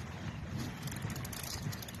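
Wind rumbling on the microphone in an open boat on the water. A rapid run of faint clicks comes about a second in.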